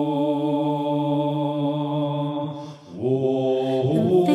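Electronic gospel music: a long held, chant-like tone over a steady low drone. It breaks off briefly about three seconds in, then a new held tone begins.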